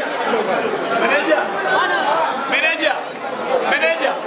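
Crowd chatter in a large hall: many voices talking at once and overlapping.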